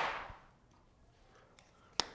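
Flip-chart paper sheet rustling as it is turned over, dying away within about half a second, then a single sharp click near the end.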